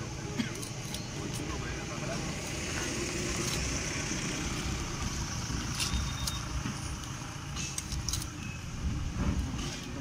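A knife cutting through pieces of rohu fish, with a few sharp clicks of the blade, over a steady background rumble that swells in the middle and fades.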